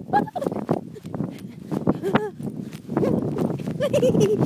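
A woman's short wordless vocal sounds close to a phone microphone, with a rising-and-falling one about two seconds in. Wind buffets the microphone, growing louder about three seconds in.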